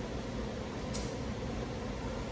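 Steady indoor room noise with a low hum, and one brief faint click about a second in.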